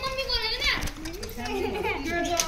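Children's voices: high-pitched chatter and calls from kids at play.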